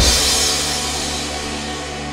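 A drum kit fill ends on a final crash with the cymbals, which then ring and fade away. Under them, the song's backing track holds low sustained synth and bass tones.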